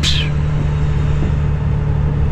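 Cummins ISX diesel engine of a 2008 Kenworth W900L semi truck running steadily under way, heard inside the cab as a low drone.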